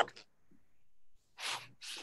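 Two short breathy bursts from a person about a second and a half in, the first fuller and the second a brief high hiss, heard over a video-call microphone. The very end of a man's sentence is at the start.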